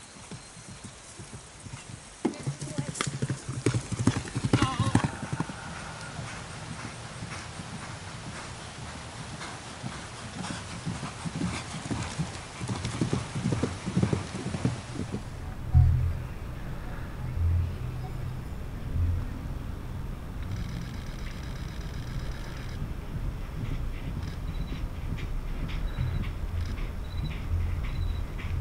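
Hoofbeats of a horse galloping on grass turf, irregular thuds coming and going, with voices in the background.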